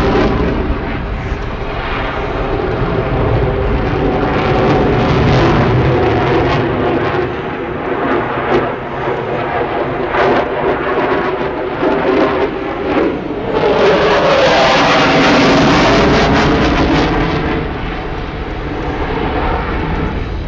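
F-16 fighter jet flying with its afterburner lit, its engine noise loud and continuous, swelling and easing several times as the jet turns, and falling off somewhat near the end.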